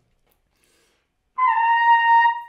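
Trumpet playing a single high note, a Dó 5 (high C), held steady. It begins about one and a half seconds in after near silence.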